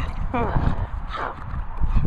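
A dog making short high-pitched whining yowls that swoop up and down in pitch, three or so in quick succession, while playing with a large plastic ball, with knocks and thuds from its paws and the ball on the grass.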